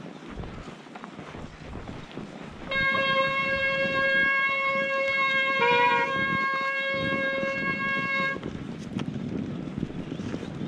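Mountain-bike disc brakes squealing under braking on a snowy descent: one steady pitched squeal with overtones, starting about three seconds in and lasting nearly six seconds, with a short dip in pitch near the middle. Tyre and wind rumble runs underneath.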